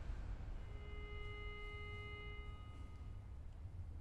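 A single sustained pitched note sounds about half a second in and fades away over two to three seconds, over a low room rumble: the starting pitch given to the unaccompanied choir before they sing.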